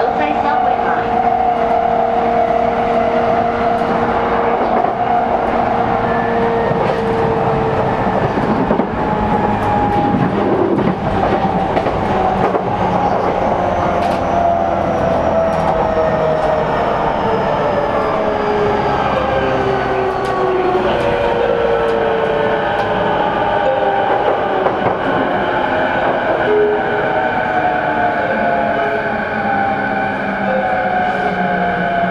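Running sound inside an E233-series electric commuter motor car: the traction motor and VVVF inverter whine, with several tones gliding steadily down in pitch from about a third of the way in as the train slows. Wheels click over rail joints throughout.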